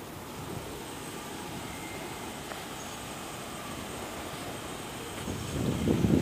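Steady low rumble of railway-station background noise, growing louder near the end as a train moves in the distance.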